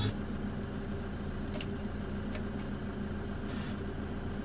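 Hyundai Porter II truck's diesel engine idling steadily, heard from inside the cab, with a few light clicks of the dash radio's preset buttons being pressed.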